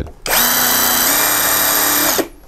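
Interskol GAU-350-18VE 18 V cordless impact wrench's brushless motor running free with no load on the anvil. It starts a moment in, runs steadily and steps up in speed about halfway through as the variable-speed trigger is squeezed further.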